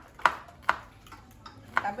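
Three sharp clicks of a kitchen utensil knocking against cookware, spaced unevenly over about a second and a half.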